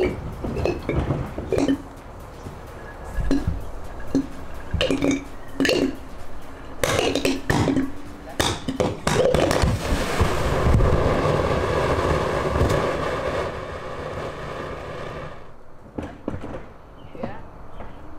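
Calcium hypochlorite and ethylene-glycol brake fluid reacting in a glass bottle: a quick run of sharp pops about seven seconds in, then the bottle vents a jet of smoke with a loud steady hiss and whistling tones for about six seconds, cutting off suddenly near the end.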